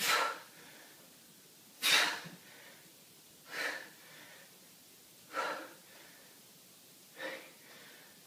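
A man's sharp, forceful exhales as he works through goblet squats, one breath per rep, five in all, roughly every two seconds. The first two are the loudest and the later ones weaker.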